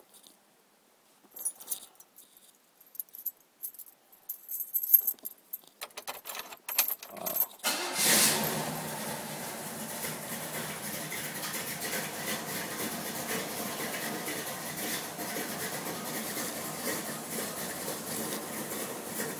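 Car keys jangling at the ignition for several seconds, then about eight seconds in a steady sound comes on suddenly and holds at an even level.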